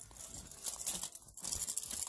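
Rustling and light, irregular clicking as a small purse is handled and opened.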